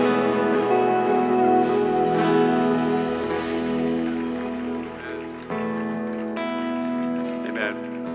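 Acoustic guitar and band playing soft sustained chords between songs. The chord rings out and dies away about five seconds in, then a new chord starts.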